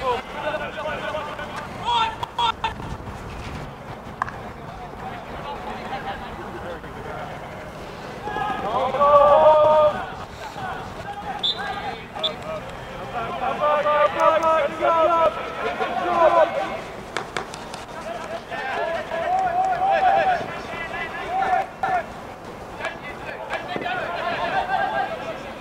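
Field hockey players shouting calls to each other across the pitch in bursts, the loudest about nine seconds in, with a few sharp clacks of stick on ball in between.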